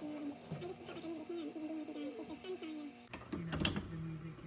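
A short melody over a steady held note, cut off about three seconds in, followed by a brief burst of scraping clicks.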